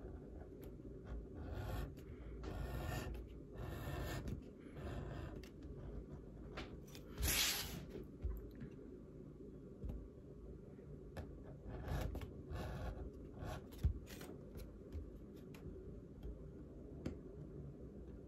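An edge beveler shaving the edge of dyed veg-tan leather: short scraping strokes at uneven intervals, the loudest about seven seconds in, as thin strips of leather curl off the edge.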